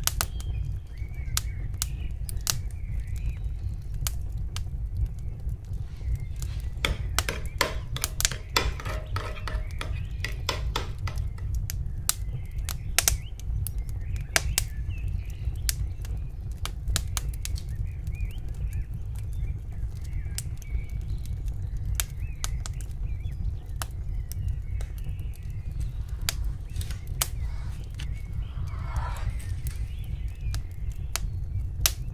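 Irregular light clicks and taps of a metal spoon against a glass bowl and dough as a ketchup sauce is mixed and spread. The clicks come thickest from about seven to eleven seconds in, over a steady low hum.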